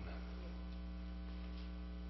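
Steady electrical mains hum with a stack of even overtones, faint and unchanging.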